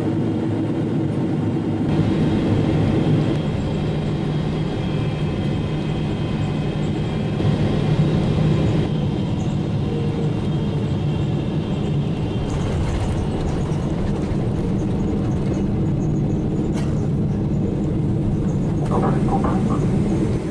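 Airliner cabin noise inside a Boeing 777-300ER: a steady rumble of engines and airflow with a low drone. The sound shifts abruptly about two seconds in and again near nine seconds.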